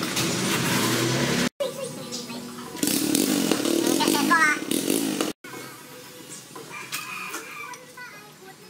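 Indistinct background voices and workshop ambience. The sound cuts out abruptly twice, with a steady low hum before the first cut and quieter ambience after the second.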